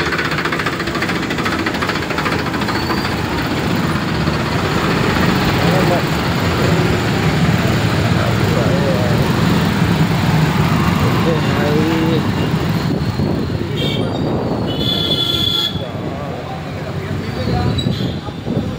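Busy market-street traffic heard from a moving two-wheeler: engines running close by, road and wind noise, and scattered voices of the crowd. A vehicle horn sounds briefly about fifteen seconds in.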